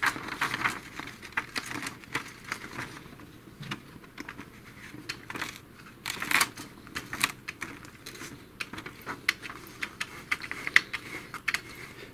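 Irregular light clicks and ticks from the plastic rollers and gears of an Epson TX650 printer's paper-feed assembly as it is worked by hand and a sheet of paper is drawn through, with faint paper rustle.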